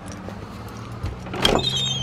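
A wooden panel door being pushed open: a knock or two, then a high wavering squeak from its hinges near the end, over a steady low hum.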